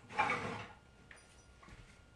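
A wooden cutting board being fetched: a short scraping rub of wood lasting about half a second near the start, followed by faint handling noise.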